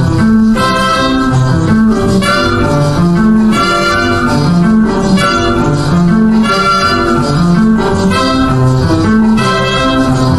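Calypso band playing an instrumental passage with no singing: a steady dance rhythm with a bass line moving under the melody.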